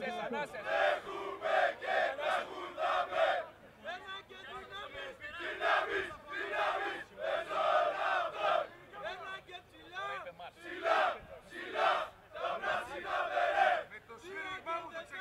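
Group of men shouting in rhythm, about two shouts a second in runs with short lulls, cheering on a tug-of-war team as it hauls on the rope.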